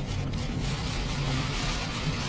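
A pause in speech played backwards: a steady hiss with a faint low hum from the recording's background.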